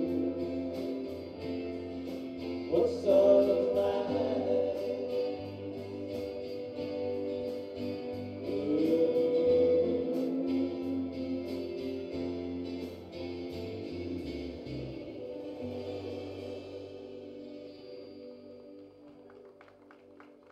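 Live rock band with guitars, bass and drums playing a song with sung vocals; the music dies away toward the end as the song finishes.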